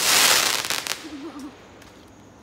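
Aerial firework burst crackling and fizzing as its glittering stars fall, loud for about a second and then dying away.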